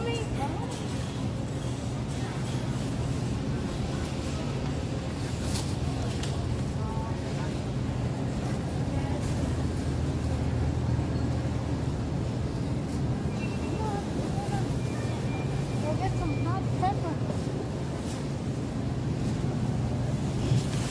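Supermarket background: a steady low hum of the store, with faint distant voices now and then.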